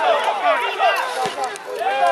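Speech: a voice talking quickly and without pause, the pattern of television match commentary.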